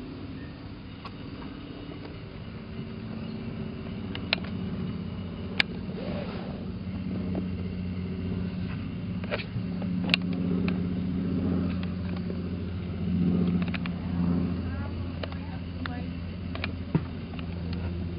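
Indistinct murmur of people's voices over a steady low hum, with a few sharp clicks scattered through; the voices grow louder for a few seconds past the middle.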